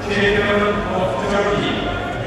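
Speech: a voice talking, with the noise of the sports hall beneath.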